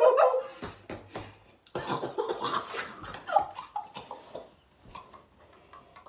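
Women laughing in short bursts with hands over their mouths, reacting to the burn of an extremely hot gummy bear, with a few light clicks and rustles in between.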